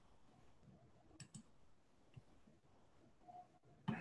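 Near silence, with a few faint clicks from working a computer: two close together about a second in and one more near the middle.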